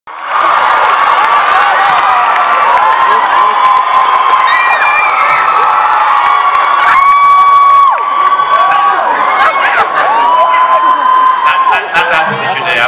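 A large hall audience screaming and cheering, many high-pitched voices holding long shrieks over one another. The screaming is loud throughout and peaks about seven to eight seconds in.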